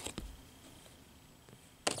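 Quiet handling of baseball trading cards as they are flipped through, with one sharp click near the end.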